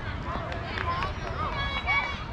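Children's high voices calling out and chattering across an open field, with one drawn-out call near the end, over a steady low rumble.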